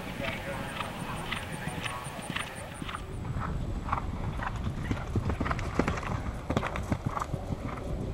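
Hoofbeats of a horse galloping on turf, a run of irregular thuds.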